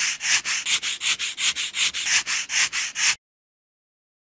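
Bristle brush scrubbing in quick, even back-and-forth strokes, about four a second, that stop abruptly about three seconds in.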